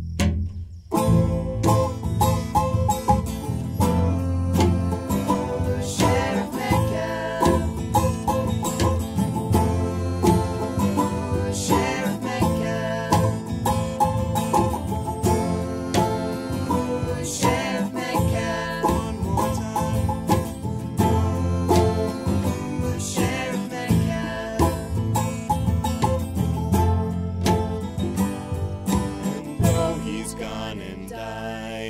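Acoustic string band playing an instrumental break in a bluegrass-style song: fast picked notes from guitar and mandolin over a steady upright bass line. The band comes back in after a brief drop about a second in.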